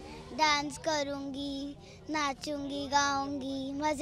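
A young girl singing a short tune, holding each note steady for about half a second to a second, with brief breaks between them.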